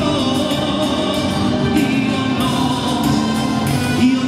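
Live band music with a horn section of trumpets and saxophone, and several singers singing together.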